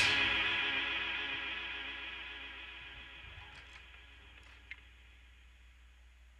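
The band's final chord ringing out after the song stops, an electric guitar through effects sustaining with echo and fading away over about five seconds. A small click about four and a half seconds in.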